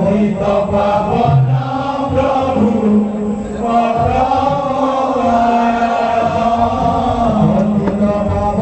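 Devotional kirtan chant sung by a group of men in chorus, long held and gliding notes, over hand-played double-headed barrel drums.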